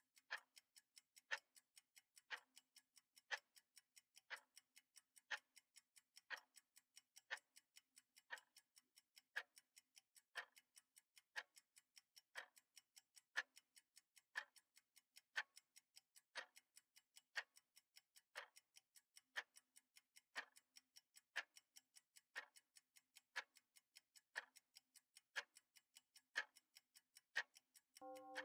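Countdown timer ticking once a second, sharp clock-like ticks with near silence between them.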